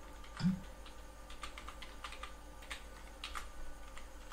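Typing on a computer keyboard: about ten irregular key clicks, with one louder, heavier thump about half a second in, over a faint steady hum.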